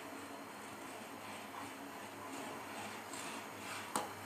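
Faint stirring and pouring in a steel pot of hot milk as lemon juice is added to curdle it, over a low steady hum, with one sharp click near the end.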